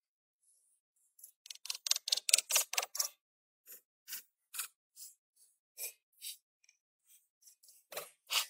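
Pick striking and scraping into stony soil: a quick run of strokes about a second and a half in, then single strokes about every half second.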